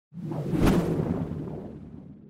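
Logo-animation sound effect: a whoosh that swells to a sharp hit with a low rumble a little over half a second in, then fades away over about two seconds.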